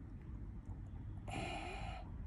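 A man's short, breathy exhale a little past the middle, over a steady low rumble.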